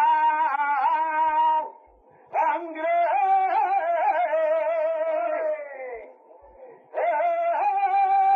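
A male flamenco cantaor singing a saeta unaccompanied, in long, wavering melismatic phrases. A phrase ends early on with a brief breath pause. The next long phrase slides downward at its close, and a new phrase starts near the end.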